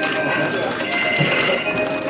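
Audience applauding, with music and voices in the hall.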